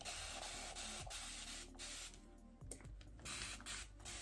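Fine-mist spray bottle spraying water onto hair, a faint steady hiss that stops about two seconds in.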